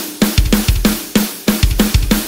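Drum kit playing alone at the opening of a rock song: quick, evenly spaced snare and kick drum hits, about five a second, with cymbals.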